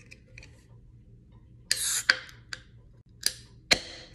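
A 16 fl oz can of Sol Chelada being opened by its ring-pull tab: a short hiss of escaping gas about halfway through, then several sharp clicks of the tab, the loudest near the end.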